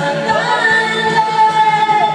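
A voice singing over backing music, holding one long note through the middle.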